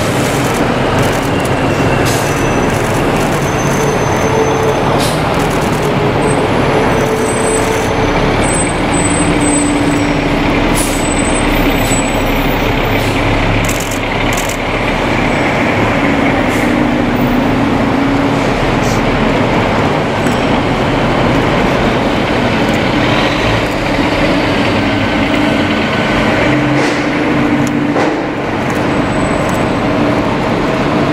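Diesel fire engines and a ladder truck passing slowly one after another, their engines running steadily, with short sharp hisses of air brakes among them.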